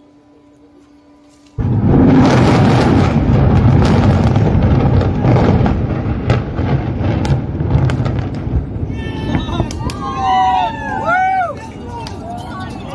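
Controlled explosive demolition of the Supertech twin towers, the 32-storey Apex and the 29-storey Ceyane. About one and a half seconds in, a sudden loud blast sets off a dense string of sharp cracks from the charges, over a heavy rumble as the concrete towers come down, for about seven seconds. Near the end, excited voices shout over the fading rumble.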